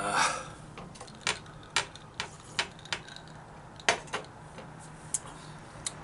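A short vocal sound from a man at the start, then scattered sharp clicks, about ten of them at uneven gaps, over a faint steady hum.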